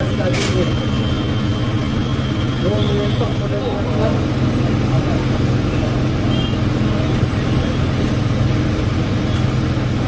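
Steady low hum of a restaurant dining room's fans and air conditioning, with faint background chatter and a brief click about half a second in.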